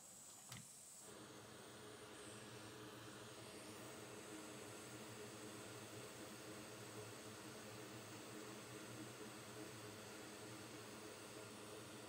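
Faint, steady hum of a small fan motor that starts about a second in, over a light hiss, while a component is desoldered from the board.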